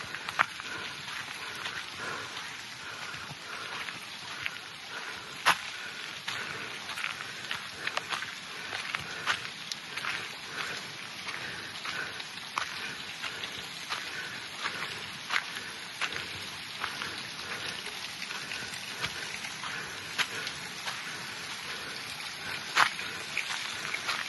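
Footsteps on a gravelly dirt forest path: a string of short crunches and sharper clicks over a steady background hiss.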